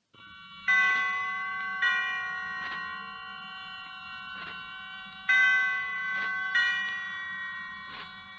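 Chimes struck slowly, about six strokes spread over several seconds, each note ringing and fading away, over the faint hiss of an old radio recording.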